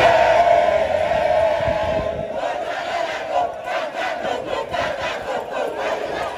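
Large crowd shouting and chanting together in one loud, held cheer. After about two seconds it gives way to a quicker rhythmic pattern, about three beats a second.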